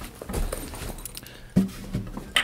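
Handling noise from an all-mahogany acoustic guitar being moved into playing position: soft knocks and rustling against the body. About one and a half seconds in there is a brief pitched tone.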